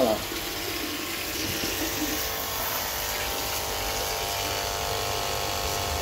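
Small solar-powered electric water pump running steadily with a motor hum, its hose jet spraying into a tub of water.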